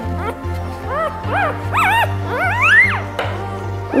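Five-day-old Aussiedoodle puppy squealing while being held: a run of short, rising-and-falling high cries, the last one longer, over background music.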